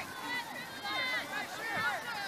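Indistinct voices of several people calling out from a distance, too far off to make out words.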